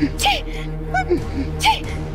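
Three short, high gasping cries, each a quick rise and fall in pitch with a rush of breath, over low, steady background music.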